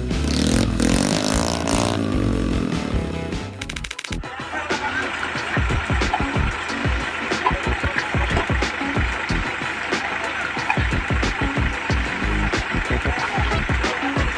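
Engine noise from motor vehicles mixed with background music. The sound changes abruptly about four seconds in, from a small motor to a heavier engine.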